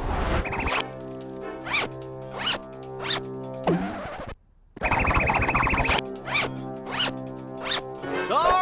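Cartoon zipper sound effects, two quick zips, over light background music, with several short swishing sound-effect sweeps between them. Everything cuts out for a moment just past the middle.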